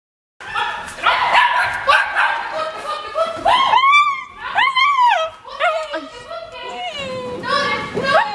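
Border terrier giving high-pitched barks and yelps, a couple of them drawn out and rising then falling in pitch, with a person's voice mixed in.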